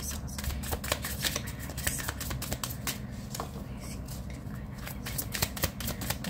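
A deck of tarot cards being shuffled by hand: a rapid run of small clicks and riffles as the cards slide over one another, easing off in the middle before picking up again near the end.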